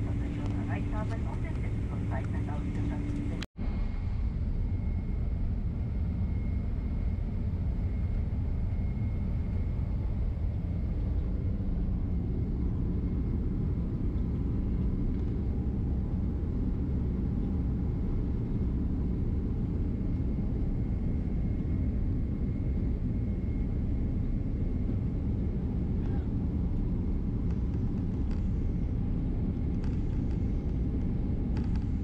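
Cabin noise of a Boeing 767 taxiing: a steady low rumble of the engines and airframe with a faint high steady tone. A voice is heard over it for the first few seconds, then the sound drops out for an instant.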